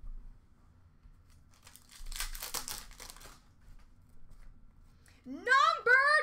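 Foil card-pack wrapper being torn open and crinkled for about a second and a half, followed by light handling clicks of cards. Near the end a loud, high-pitched voice rises and falls in pitch.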